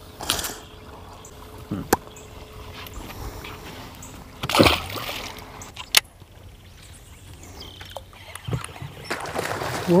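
A short splash of water about four and a half seconds in as a largemouth bass is dropped back into the pond, with two sharp clicks, one before it and one after.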